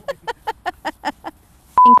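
A woman laughing in rhythmic, fading bursts. Near the end comes a short, loud, steady electronic beep at a single pitch.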